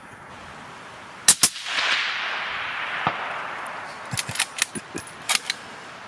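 A suppressed .260 Remington bolt-action rifle fires once about a second in, a sharp report with a second crack close behind it, followed by a long echo rolling back through the forest and fading over about two seconds. Several sharp metallic clicks follow near the end as the bolt is worked.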